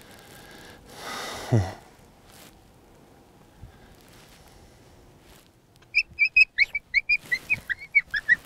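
A predator call used to lure coyotes sounds a rapid string of short, high-pitched notes, several a second, some falling in pitch, starting about six seconds in.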